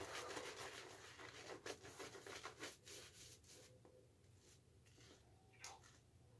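Badger shaving brush swirling wet shave-soap lather on a bearded face: faint, quick rubbing strokes, the lather overly wet from too much water left in the brush. The strokes fade out about three and a half seconds in, leaving near silence.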